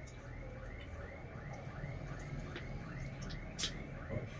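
Quiet room with a faint high chirp repeating evenly about four times a second, and a single sharp click near the end.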